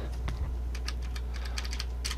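Quick, light clicks of computer keyboard keys being typed, over a steady low electrical hum.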